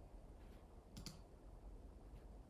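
Near silence: room tone, with a faint sharp click about a second in and a fainter one before it.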